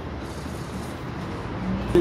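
Steady low rumble of a city bus's engine and running gear heard from inside the passenger cabin, with a faint steady hum joining in near the end.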